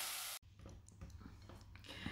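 Spatula stirring and scraping dry grated coconut pol mallum in a hot saucepan, with a sizzle, cut off abruptly less than half a second in. Then near-silent room tone with a few faint ticks.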